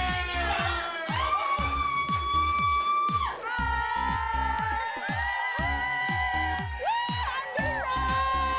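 Pop dance music with a deep kick-drum beat and a gliding melody over it.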